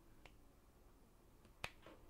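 Near silence (room tone), broken by one sharp click about one and a half seconds in and a fainter tick near the start.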